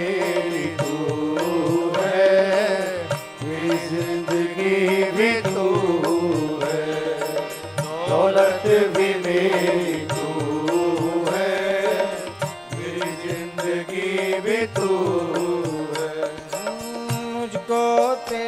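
Live Hindi devotional bhajan music: harmoniums play under a male voice that sings long, wavering, drawn-out phrases without clear words.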